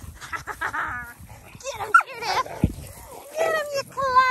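Dalmatians vocalising in rough play: a string of short whining and yelping calls, several falling in pitch, with a single dull thump a little past the middle.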